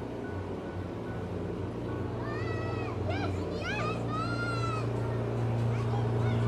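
A young child's high-pitched squeals: several short calls that rise and fall in pitch, then one longer one, over steady background music and the hum of a busy indoor play hall.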